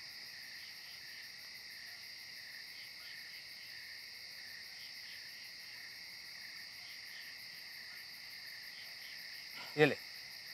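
Crickets chirping, a steady high trill that carries on without a break.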